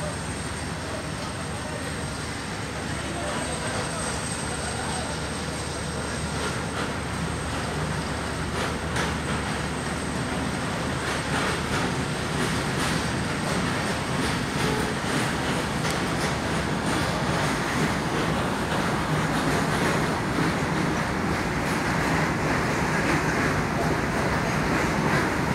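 A train rolling past at close range, its running noise steady and slowly growing louder, with scattered clicks in the middle stretch.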